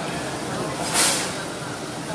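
A short, sharp hiss about a second in, over a steady background hiss.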